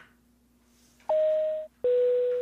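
Airliner cabin chime: two clear tones, a higher one then a lower one, the kind of 'ding-dong' that signals a crew announcement to passengers. It starts about a second in, after a near-silent pause.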